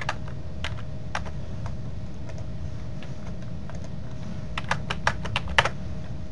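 Computer keyboard typing: a few scattered keystrokes, then a quick run of keystrokes near the end, as numbers are entered into a table. A steady low hum runs underneath.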